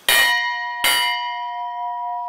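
A makeshift bell, a rusty metal cylinder hung from a tree, struck twice with a hammer, the strikes under a second apart, ringing on in long, steady, clear tones. It is rung as the signal for everyone to gather.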